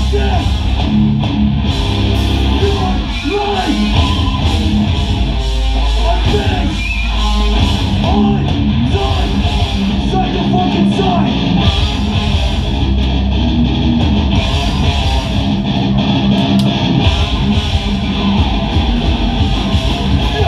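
A hardcore punk band playing live at full volume: distorted electric guitars, bass and drums, with a vocalist shouting over them.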